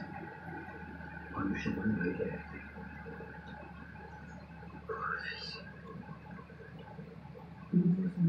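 Faint steady hum of reef-aquarium equipment, with two soft murmured vocal sounds from a man, the second a short rising 'mm' about five seconds in.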